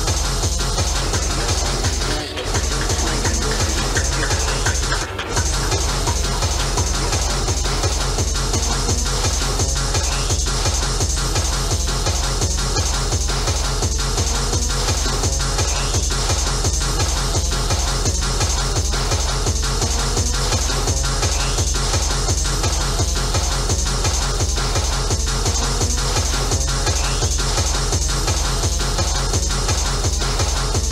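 Free tekno (hardtek) DJ mix: a fast, steady kick drum at about three beats a second, with repeating rising synth sweeps. The beat drops out briefly twice, about two and five seconds in.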